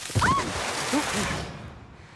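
A man's short yelps and grunts over a burst of rushing, scuffling noise as he is flung and tumbles onto the ground; the noise fades within about a second and a half.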